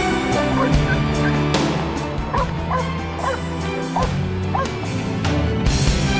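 A dog barking and yipping in short, high, repeated bursts over background music.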